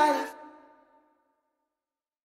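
The closing note of a deep-house remix, with a breathy vocal, fading out within the first second and ending in silence.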